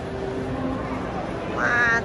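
Steady crowd-walkway murmur with a low hum; about one and a half seconds in, a high-pitched voice lets out a brief rising cry, the loudest sound here.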